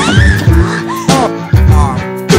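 Background music with a steady drum and bass beat under a sliding, wavering lead line.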